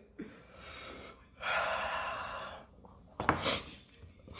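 A man breathing hard through his mouth from the burn of a Carolina Reaper pepper. A faint breath is followed by a louder, long hissing breath of about a second, then a short sharp gasp near the end.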